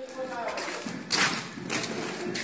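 Voices, with a sharp thud a little after a second in.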